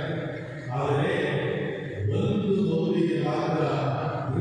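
Liturgical chant: sung voices holding slow, drawn-out notes, with brief pauses about half a second in and again about two seconds in.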